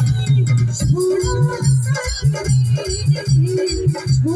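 Loud instrumental music between sung lines: an electronic keyboard playing a melody over a steady, rhythmic bass and drum beat.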